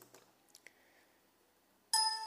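Quiet room tone with a couple of faint clicks, then near the end a single bright chime rings out suddenly and begins to fade.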